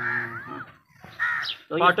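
A man's voice speaking in drawn-out syllables, with a brief pause about a second in.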